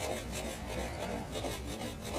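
Fan brush bristles rubbing and dabbing paint onto a canvas in a quick run of scratchy strokes, slowed to half speed so the scrubbing sounds lower and drawn out.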